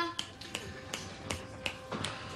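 A run of sharp clicks, about three a second, over a steady background music drone.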